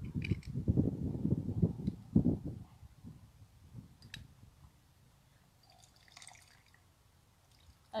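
Two lime halves going into a cocktail shaker, with handling noise and dripping liquid for about the first two and a half seconds, after which it goes much quieter.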